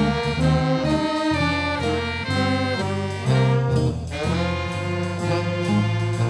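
Student jazz band playing live, the horns sounding held, changing chords over a bass line.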